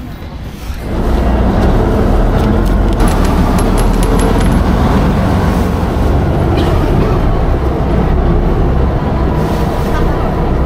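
A Saen Saep canal boat's engine running loud and steady under way, with water rushing along the hull. It starts abruptly about a second in.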